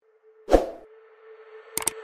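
A single plop sound effect with a falling pitch about half a second in, then a few quick clicks near the end, from a subscribe-button animation, in a break in the background music.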